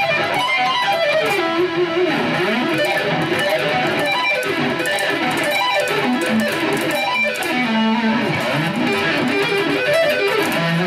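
Electric guitar played lead, fast runs of single notes climbing and falling up and down the neck without a pause.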